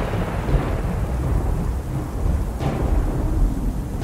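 Thunder rumbling over rain: a continuous deep rumble under a steady hiss of rain, with a brief brighter surge about two and a half seconds in.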